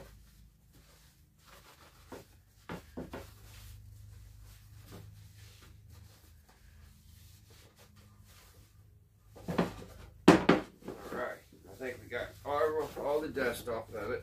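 A few light clicks of handling over a steady low hum, then a couple of sharp knocks near the end as the radio cabinet is moved and set down on a plywood tabletop.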